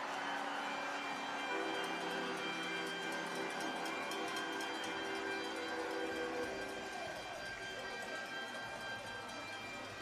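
Hockey-arena goal celebration for a home-team goal: the arena's horn and celebration music play as several held, overlapping tones over a haze of crowd noise. It is heard faintly through the broadcast feed, and some tones drop out around the middle.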